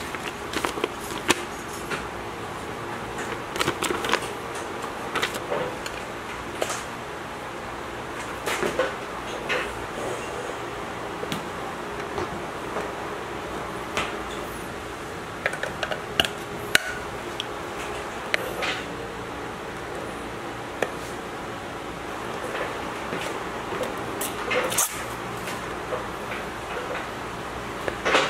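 Handling noises from unboxing a digital hanging scale: paper rustling, then scattered small clicks and taps of a screwdriver and the scale's plastic battery cover as batteries are fitted, over a steady low hum.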